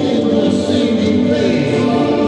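Choir singing, many voices holding sustained chords.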